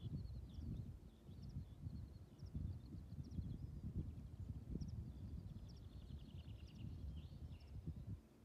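Wind buffeting the microphone in an uneven, gusty rumble, with faint small-bird chirps scattered over it and a short rapid trill about five to seven seconds in.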